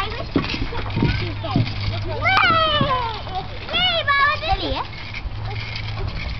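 Children shrieking and calling out at play: a long high squeal that falls in pitch about two seconds in, then a wavering high cry a second or so later.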